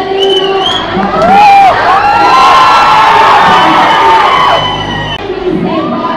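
Large crowd of college students cheering, whooping and shouting. It swells to full volume about a second in, with yells rising and falling over the din, and dies down near the end.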